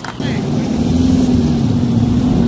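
A steady motor hum with a low rumble underneath, starting abruptly just after the start.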